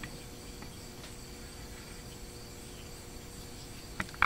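Faint, steady night-time insect chorus, typical of crickets, with a low steady hum underneath.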